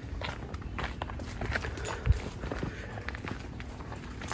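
Footsteps walking along a dirt path, irregular short scuffs and crunches.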